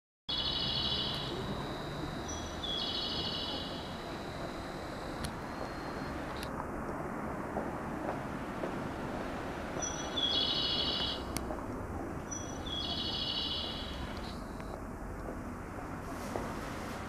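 Recorded bird-chirp guidance sound from a Japanese station platform speaker, looping: two short bursts of high chirping about two and a half seconds apart, the same pair repeating about ten seconds later, over steady platform background noise. In Japanese stations this chirping marks the stairs for visually impaired passengers.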